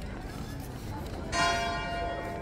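A church bell struck once about a second and a half in, ringing on with many overtones and slowly fading, over a background murmur of voices.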